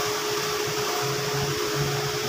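A steady mechanical whir with a constant hum, even in level throughout.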